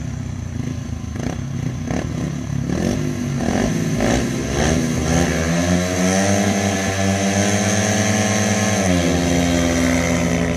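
Two speedway bikes' single-cylinder methanol engines blipping their throttles at the start gate, then revving up together and holding high revs as they pull away from the gate. The pitch drops about a second before the end.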